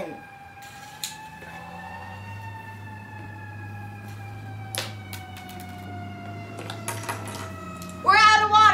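A long, siren-like wailing tone that rises a little in pitch, then sinks slowly, over a low steady hum. A few light clicks of plastic Lego pieces being handled fall about a second in and near five and seven seconds.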